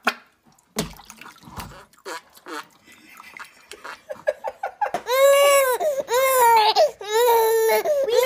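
A baby crying in a run of loud wails, each under a second long and arching up and down in pitch, starting about five seconds in. Before that there are only faint clicks and small water sounds.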